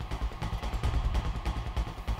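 Suspense background music under a quiz question: a low, rapidly pulsing drum-and-bass rumble.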